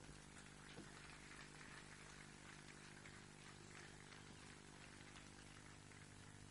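Near silence: a faint, steady electrical hum.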